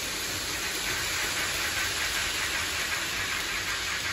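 Orient Express model train running past on elevated track: a steady hissing rattle of wheels on rails and motor whir.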